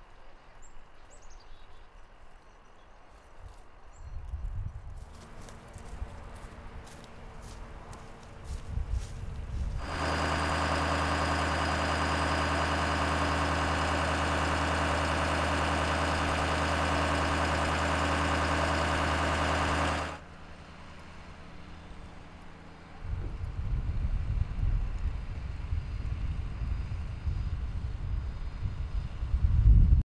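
Tow truck's engine running at a steady idle close by, a constant low hum that starts and stops abruptly in the middle of the stretch. Quieter low rumble before and after it.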